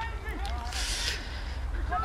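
Faint, distant shouts of footballers on the pitch over a low steady rumble, with a brief hiss about a second in.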